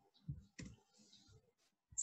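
Two faint clicks in quick succession from a computer mouse or keyboard, in an otherwise quiet room, as a presentation slide is being advanced.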